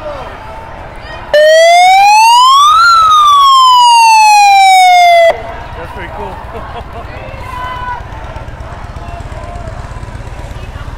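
A loud electronic siren sounding close by: one wail that starts abruptly, rises for about a second and a half, falls back over the next two and a half seconds and cuts off sharply, about four seconds in all.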